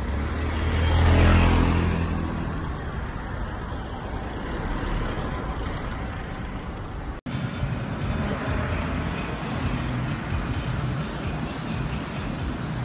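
Street traffic: a motor vehicle passes close by, loudest about a second in, over steady road noise. The sound breaks off abruptly about seven seconds in and picks up again as steady traffic noise.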